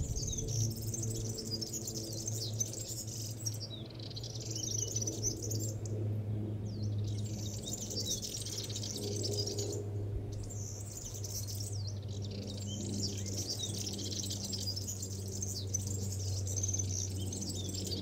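Sardinian warbler singing: a run of short, fast, rattling phrases of harsh, scratchy notes, broken by brief pauses, over a steady low hum.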